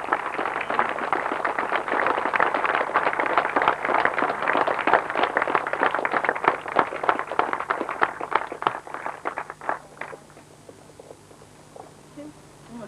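Small crowd applauding: dense hand-clapping that thins out and stops about ten seconds in.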